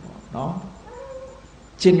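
A faint cat meow, a thin thread of pitch about a second in, heard between a man's spoken syllables.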